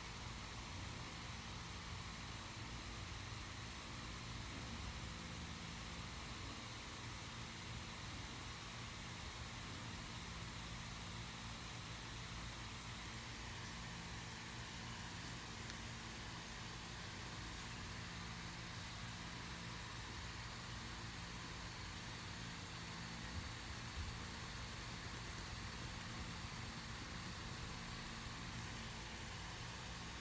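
A steady low hum with a faint hiss, like a motor or fan running in the background, with a couple of soft knocks about three-quarters of the way through.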